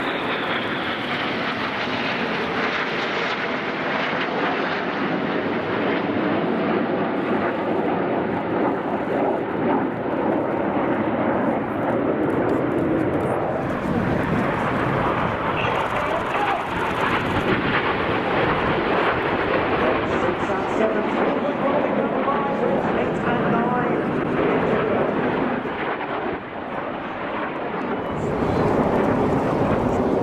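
BAE Hawk jet trainers of the Red Arrows flying overhead, a loud, steady jet noise throughout, dipping briefly near the end and then swelling again.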